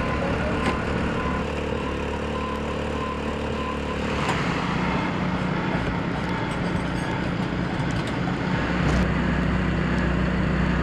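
Machinery engines running with a steady drone during a water main repair dig.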